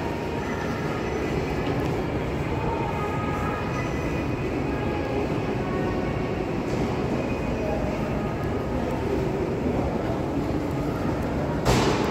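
Metro station hubbub: a steady rumble with a faint murmur of many voices from crowded platforms, and a short, loud hiss near the end.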